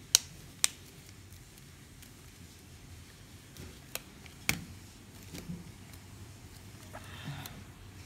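Phone case being snapped onto a smartphone: two sharp clicks about half a second apart at the start, then a few fainter clicks and soft handling sounds.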